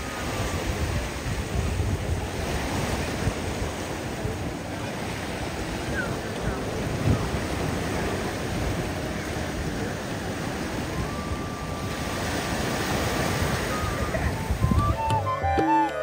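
Sea surf washing and breaking over rocks, with wind buffeting the microphone. Music with drums comes in near the end.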